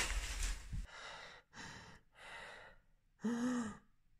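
Tissue paper rustling as a wrapped present is pulled open, then a few short breaths and a voiced gasp of surprise about three seconds in.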